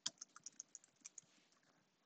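About eight faint keystrokes on a computer keyboard, typed in a quick run that stops a little past halfway.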